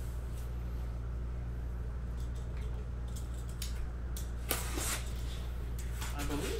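Cardboard case of trading-card boxes being opened by hand: faint scraping and handling noises, then a short, loud scrape or rip of cardboard about four and a half seconds in.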